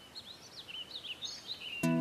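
Small birds chirping quietly, a string of short rising and falling chirps. Near the end, music starts with a plucked-string note.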